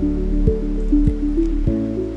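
Background music: sustained synthesizer chords that change pitch every half-second or so, over a low beat thumping about every 0.6 seconds.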